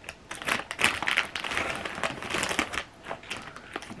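Foil-lined potato chip bag crinkling and rustling as a hand reaches into it for chips: a busy run of crackly rustles from a moment in until about three seconds in.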